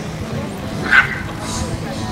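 A dog gives one short yip about a second in, over a steady low hum.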